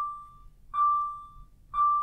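A single-pitched beep repeating about once a second. Each beep starts sharply and fades over about half a second.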